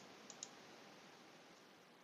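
Near silence: room tone, with a few faint computer-mouse clicks in the first half second.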